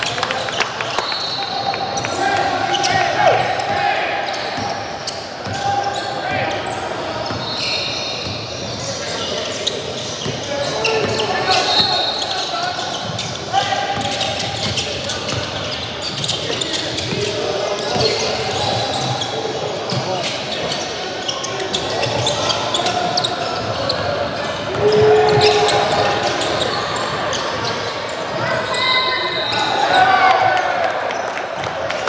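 Basketball game on a hardwood gym floor: a ball dribbling and bouncing, sneakers squeaking in short bursts, and players' indistinct shouts, all in a large gym hall.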